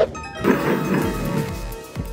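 Edited transformation sound effect over background music: a sudden hit, then a ringing, chiming shimmer with a whoosh about half a second in that fades out.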